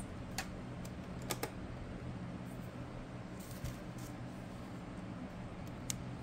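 A few light clicks and taps of hard plastic nail tools and a nail tip being handled on a desk, over a steady low hum.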